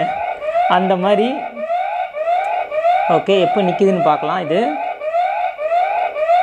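Electronic police-style siren alarm from a toy car-shaped ATM piggy bank, a rapidly repeating rising wail of about two to three sweeps a second. It is the lock's alarm, set off after the password has been entered wrongly too many times.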